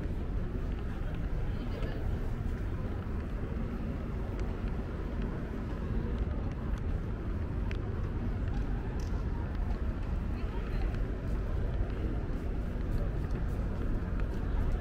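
Busy city street ambience: a steady low rumble of traffic with the murmur of passers-by talking.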